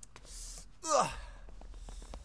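A man's sigh: a breathy draw of air, then a short voiced "ah" that falls steeply in pitch about a second in.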